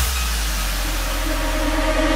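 Electronic dance music in a beatless break right after a falling pitch-sweep build-up: a sustained deep bass drone under a wash of white-noise hiss, with a few held synth tones and no beat.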